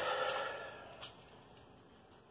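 A man's breath out just after speaking, fading away within about a second, with a faint small click about a second in, then quiet room tone.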